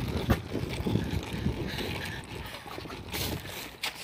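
Wind buffeting the phone's microphone, with rumbling handling noise as the camera is moved and a sharp knock about a third of a second in.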